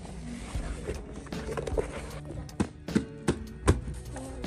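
Hardcover books being handled and leafed through, with a few sharp knocks in the second half as the books are moved.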